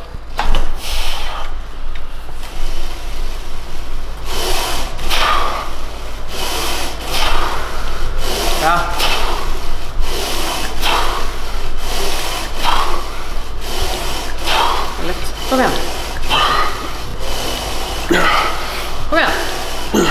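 A man breathing hard in short, forceful puffs about once a second, some of them strained grunts, as he works through a heavy set of Smith-machine incline presses.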